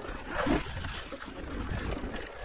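Mountain bike rolling over a rocky dirt trail: tyre rumble and rattle over loose stones. About half a second in comes a brief, louder pitched sound that sweeps in pitch and is the loudest moment.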